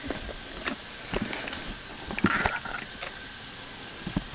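Scattered light clicks and knocks of objects being handled, with a brief rustle a little over two seconds in.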